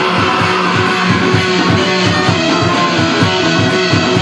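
Garage rock band playing live, with electric guitar over a fast, steady driving beat.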